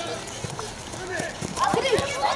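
Young children's voices calling out on a football pitch, getting louder in the second half, with a few dull knocks of the ball being kicked and dribbled on artificial turf.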